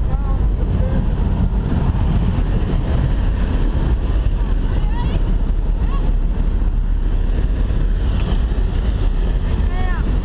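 Steady loud roar of wind and aircraft engine coming through the open door of a jump plane's cabin, heard from inside the cabin, with faint shouted voices under it.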